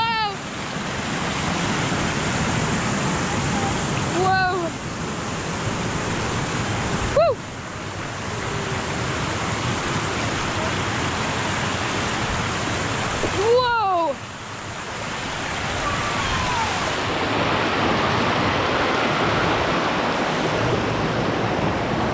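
Shallow river water rushing steadily over flat sandstone ledges and small cascades. Brief high voice exclamations come through a few times, with short dropouts between edited clips.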